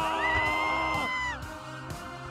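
Cartoon screaming: a long held scream, joined just after the start by a second, higher scream that rises and holds, both cutting off about a second and a half in, over background music with a steady beat.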